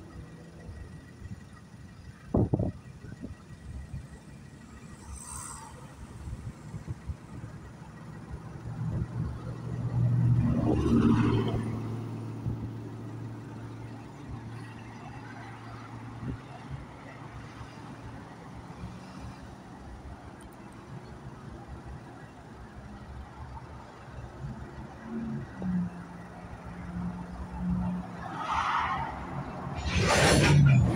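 A motor vehicle's engine running, a low hum that swells to its loudest about ten to thirteen seconds in and then fades, with one sharp knock about two and a half seconds in.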